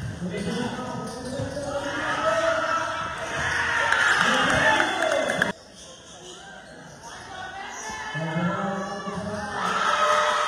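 Spectators shouting and cheering at a basketball game, with the ball bouncing on the court. About halfway through the sound cuts off abruptly to a quieter court where fewer voices carry on with the ball, and the shouting grows louder again near the end.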